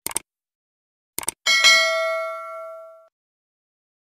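Two quick double clicks, like a mouse button, then a bright bell ding with several ringing tones that fades out over about a second and a half: the stock sound effect of a subscribe-button and notification-bell animation.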